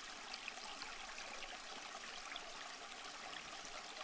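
Faint, steady flow of a shallow creek trickling over rocks.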